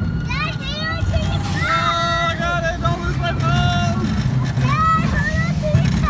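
Riders on a small roller coaster letting out repeated high-pitched yells and screams, with no clear words, over the steady low rumble of the coaster train running along its track.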